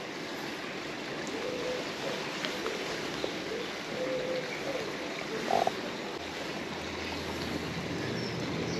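Steady rush of flowing river water, with a few faint clicks and rustles from a perch being unhooked in a landing net.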